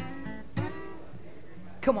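Acoustic guitar strummed: two chords about half a second apart, left ringing, then a man's singing voice comes in near the end.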